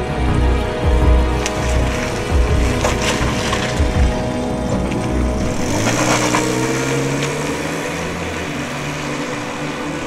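Film score music over a car's low engine rumble as the car pulls away and drives off. The rumble fades out about halfway through, with a brief rushing noise around six seconds in.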